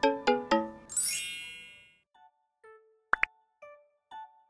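Playful, cute-sounding intro jingle: a run of quick plucked notes, then a bright shimmering chime sweep about a second in that fades away, followed by sparse short notes and two quick pops near the three-second mark.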